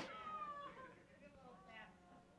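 A faint, brief high-pitched voice, falling in pitch, in the first second.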